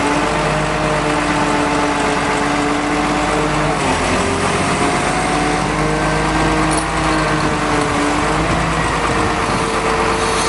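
An engine running steadily at low speed, a continuous hum whose pitch wavers and dips briefly about four seconds in.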